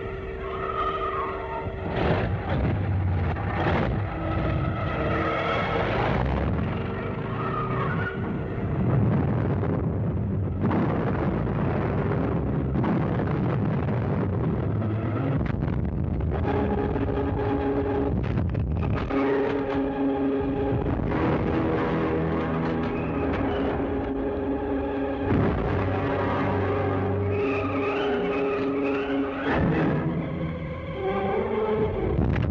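Engines of military vehicles running and revving as they move off, with music playing over them.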